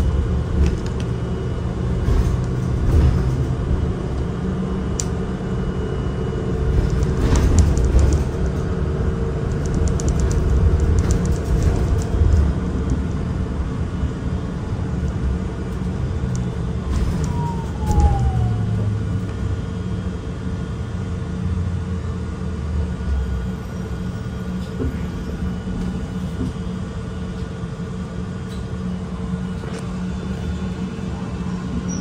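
Interior ride noise of a moving city transit bus: a steady low rumble from the drivetrain and road, with a constant hum and scattered rattles from the cabin. A brief falling whine comes a little past halfway, and the rumble eases over the last several seconds.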